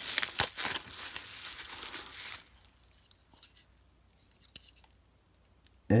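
Plastic bubble-wrap packaging crinkling and tearing as it is pulled open by hand. The crackling stops about two and a half seconds in, leaving only a few faint ticks.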